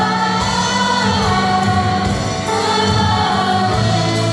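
A choir and band performing praise music live, many voices singing long held notes over the band.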